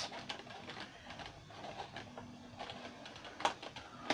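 Faint rustling and a few light clicks of a cardboard collectible-figure box being handled and its end flap opened.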